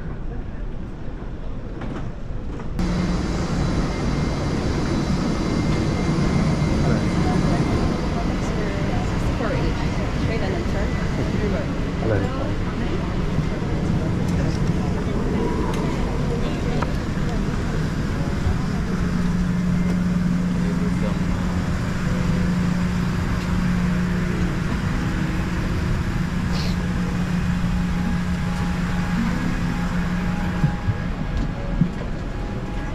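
Steady drone of a parked Boeing 787 Dreamliner's cabin air conditioning, with a low hum that holds steady and grows stronger in the second half. It begins suddenly about three seconds in, after a quieter stretch of terminal ambience, and runs under indistinct chatter of boarding passengers.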